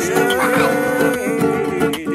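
Music: acoustic guitar playing with held and sliding melodic notes over it.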